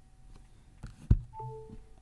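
A light click, then the iPhone's short charging chime of two pitches, which sounds as the phone starts charging wirelessly on the stand.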